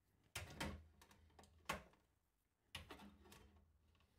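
Cylindrical battery cells being pushed into the spring-loaded slots of a Gyrfalcon S8000 battery charger: several sharp, short clicks with quiet between them.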